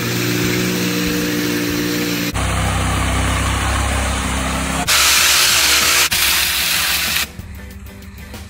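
Construction machinery engines running, in short cuts that change abruptly: a steady engine hum, a deeper engine hum from about two seconds in, then a loud hiss from about five seconds. Music takes over near the end.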